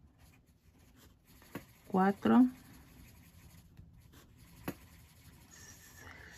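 Colored pencil scratching softly on paper as small boxes on a printed chart are colored in, with one light click late on.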